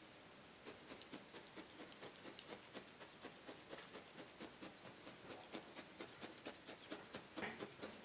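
Multi-needle felting punch tool stabbing into loose wool batt, a faint, quick series of soft pokes at about five a second, starting about a second in. Each stab meshes the wool fibres to bind the batt layer into a solid felting surface.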